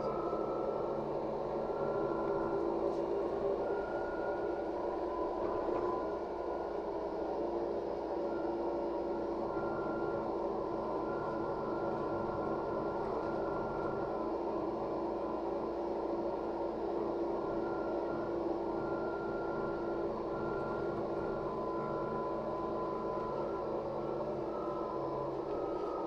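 Inside the cabin of a LiAZ 5292.67 city bus on the move: steady engine and road noise, with a faint high whine that comes and goes.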